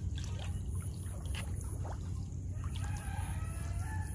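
Water dripping and small splashes as a gill net is lifted out of a pond and a catfish is worked free of the mesh over a plastic basin, over a steady low rumble. A rooster crows in the background during the last second or so.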